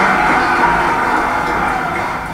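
A short clip of recorded music played over the room's speakers from the slideshow, starting suddenly and holding steady at full level.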